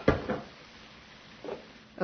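A single sharp knock of cookware being set down on a wooden counter, right at the start.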